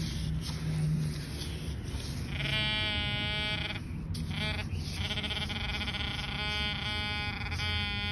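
A metal detector's steady, buzzy electronic tone sounding in two long stretches, signalling a buried metal target, with a short break about four seconds in where there is scraping in sand.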